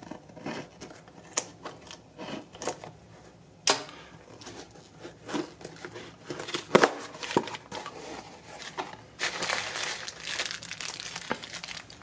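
A taped cardboard shipping box being opened by hand: tape tearing and cardboard and packing paper crinkling, in scattered sharp crackles and clicks, with a longer stretch of paper crinkling from about nine seconds in.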